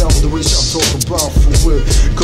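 Hip hop track: a steady drum beat with heavy bass and a rapping voice over it.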